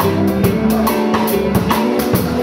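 Rock band playing an instrumental passage: drum kit keeping a steady beat with bass drum and cymbals, under electric bass and electric guitar, with no singing.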